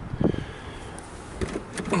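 Steady low outdoor background noise with a faint click about a second in and a few small ticks after it.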